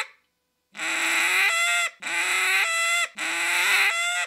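Mallard duck call blown three times, each note about a second long: a drawn-out quack that breaks upward into a higher squeal partway through, made by sliding the tongue up to the roof of the mouth to cut off the air. This is the Cajun squeal, meant to sound like a hen with food stuck in her throat.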